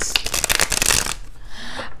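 A deck of tarot cards being shuffled by hand: a quick run of rapid card flicks for about the first second, then softer sliding of the cards.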